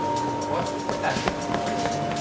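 Film score of long held notes that change pitch about halfway through, over the murmuring background noise of a metro station, with a few sharp clicks in the middle.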